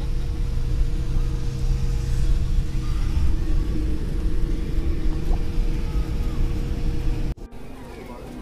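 Airliner cabin noise: a steady low rumble of engines and airflow with a constant hum. It cuts off abruptly about seven seconds in, giving way to much quieter hall ambience.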